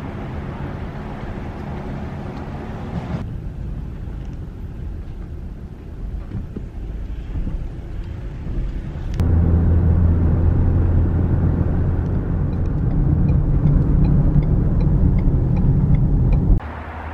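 Car driving, heard from inside the cabin: a steady low engine and road rumble. About nine seconds in it becomes abruptly louder, with a steady deep drone and more tyre noise, as when cruising on an open highway.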